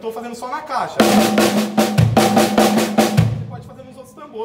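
Acoustic drum kit: a fast run of snare strokes broken by bass-drum kicks, the sticking right-left-right-left-left-kick played in thirty-second notes. It starts about a second in and stops shortly before the end.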